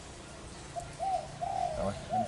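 Spotted dove cooing. About three-quarters of a second in come a short note and an arched rising-and-falling note, then a longer held note near the end.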